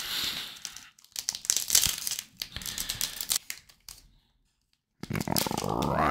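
Foil wrapper of a Topps baseball card pack being torn open and crinkled by hand: a short rustle, then a longer run of crinkling that fades out after about four seconds.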